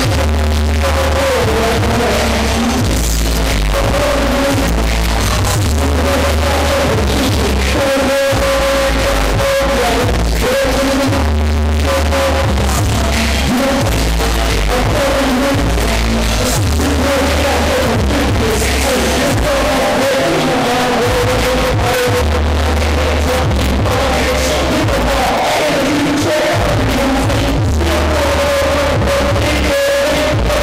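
Hip-hop beat played loud through a club sound system, with a heavy, pulsing bass line and a repeating melodic line above it.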